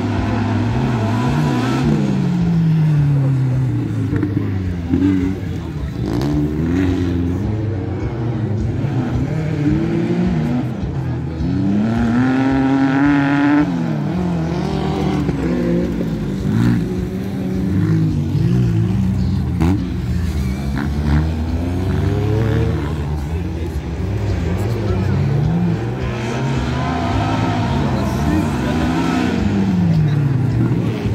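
Racing buggy engines revving hard and easing off again and again on a dirt track, the pitch climbing and dropping with each acceleration, gear change and corner.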